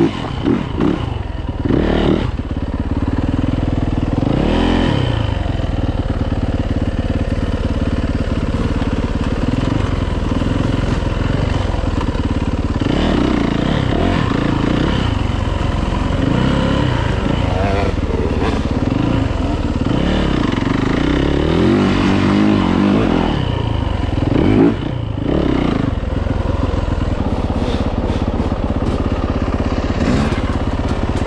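2018 Yamaha YZ450F's single-cylinder four-stroke engine running under a trail ride, its pitch rising and falling with the throttle, with a brief drop about 25 seconds in.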